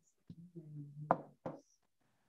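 A person's low voice sounding briefly without clear words, with two sharp knocks a little over a second in, about half a second apart, heard over a video-call line.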